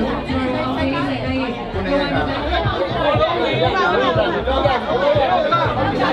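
Several people talking at once, with music playing in the background.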